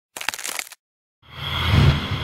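Logo-intro sound effect: a short crackling burst, then after a brief silence a swelling rumble with a high ringing tone that peaks near the end and begins to fade.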